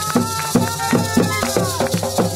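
Live cumbia: a flauta de millo holds a long note that rises and falls gently, over drums and a shaken rattle that keep a quick, steady beat.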